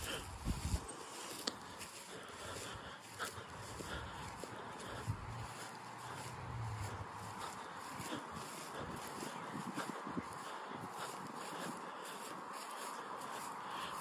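Footsteps through dry mowed grass, in a faint steady outdoor hiss.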